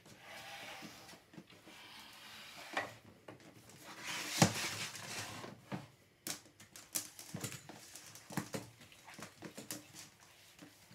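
A wooden dining table and chairs pushed and dragged across a laminate floor: scraping, a loud bump about four seconds in, then a run of small knocks and clicks.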